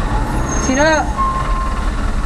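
Low rumble of traffic and the car's engine heard inside a car cabin, with a short steady beep just after a second in.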